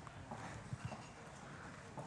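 Faint rustling and shuffling of an audience getting up from auditorium seats, with a few soft knocks about the middle.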